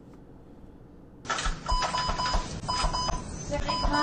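Rapid electronic beeping: a string of short high beeps, several a second, over a noisy background with low thuds. It starts abruptly about a second in, after a quiet start.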